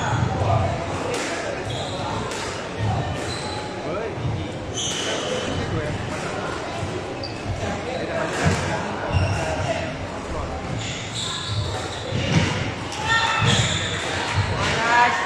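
A squash rally: the ball is struck and smacks off the court walls and floor at irregular intervals about a second apart, echoing in the court. Short, high shoe squeaks on the wooden floor come between the hits.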